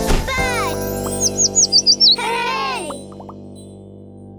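Small bird chirping, a quick run of about seven high chirps, over children's-show music. Two falling, swooping tones come just before and just after the chirps, and the music fades near the end.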